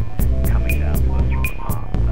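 Instrumental hip-hop beat with a heavy bass line, a short repeating melodic figure, and crisp percussion hits about four a second.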